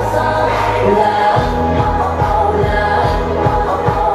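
K-pop dance song with women's voices singing over the backing track. About a second in, a held bass tone drops out and a pulsing kick-drum beat comes in.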